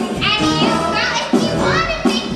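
Women's voices singing and calling out over a musical-theatre pit band, with two high, upward-gliding vocal lines, one near the start and one past the middle.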